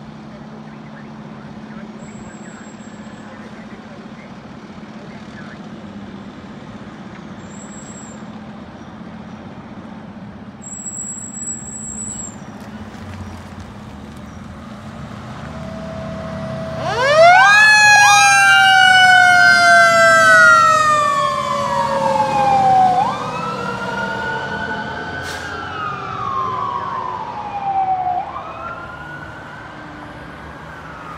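Fire truck's engine running as the ladder truck pulls out, with three short high beeps in the first dozen seconds. About halfway through, its siren starts loud: a fast wind-up and then a slow falling wail, overlaid with repeated rising and falling wail sweeps that grow fainter as the truck drives away.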